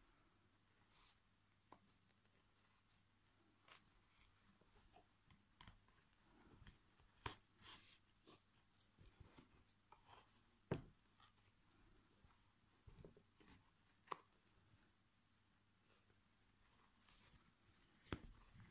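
Near silence broken by faint, scattered rubs and soft clicks of a metal yarn needle and yarn being drawn through crocheted fabric. The loudest is a short knock just under eleven seconds in.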